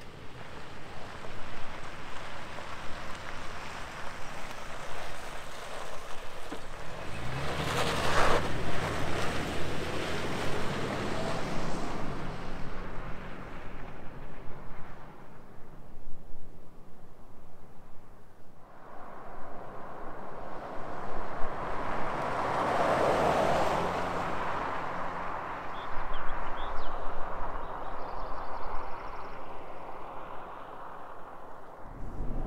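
Toyota 4Runner driving past on a gravel road twice, engine and tyres on gravel swelling as it nears and fading as it goes. The first pass is loudest about a quarter of the way in, the second about three quarters through, with wind on the microphone between them.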